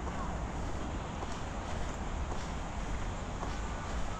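Outdoor ambience dominated by a steady low rumble of wind on the microphone, with a few faint bird calls.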